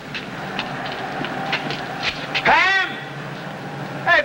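A steady rumble of street background noise with faint rattling ticks. About two and a half seconds in, a man shouts once loudly.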